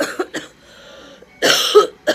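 A person coughing close to the microphone: two quick coughs, a short breath, then a longer, louder cough near the end.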